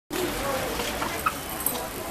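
Indistinct chatter of several people's voices, with a couple of short clicks in the second half.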